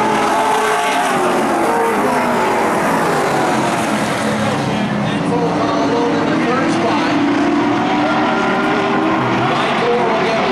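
Pro Stock stock-car engines running at racing speed as two cars run close together around the oval. Their pitch wavers up and down as they go through the turns and down the straights.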